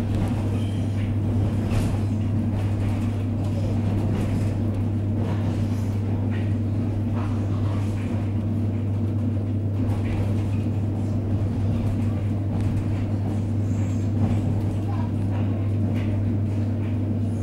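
Cabin sound of an ED9E electric multiple unit train running: a steady low hum under even running noise, with a few faint ticks.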